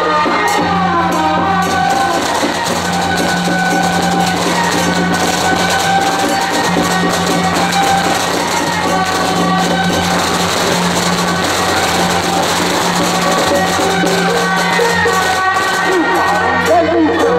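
Temple-procession music from a passing drum-and-loudspeaker cart troupe: a sustained melody over frequent drum and cymbal strikes, with a steady low hum underneath.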